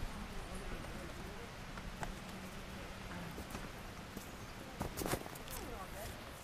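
Footsteps on dry forest-floor litter coming up close to a 360 camera, then a cluster of sharp knocks and rubbing about five seconds in as the camera is handled and picked up.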